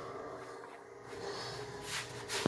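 Faint scraping of a utensil stirring granulated sugar in a small saucepan on a stove burner, with a brief breath-like hiss near the end.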